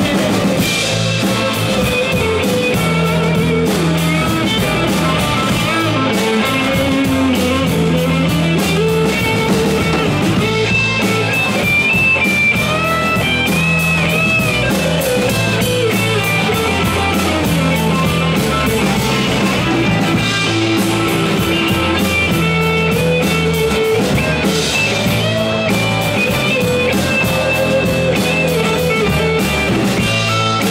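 A live blues-rock band plays an instrumental break: an electric lead guitar plays a solo line with bent notes over strummed acoustic guitar, bass and drum kit.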